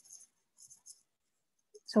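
Faint, high-pitched scratching of a stylus writing on a tablet's glass screen, in short strokes during the first second.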